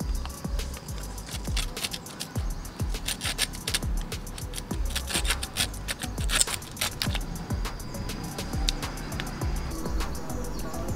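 Folding pruning saw with a stainless steel toothed blade cutting through a piece of dry bamboo: a run of quick rasping strokes from about a second and a half in until about seven seconds in. Background music plays throughout.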